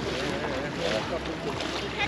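Small waves washing onto a sandy beach, a steady surf hiss, with the voices of people on the beach over it.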